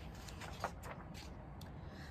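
Faint paper rustle with a few light crackles as a picture-book page is turned.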